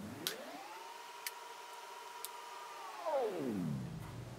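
Faint electronic whine that glides up in pitch, holds steady, then glides back down near the end, with three faint clicks about a second apart. This is an editing sound effect laid over the footage.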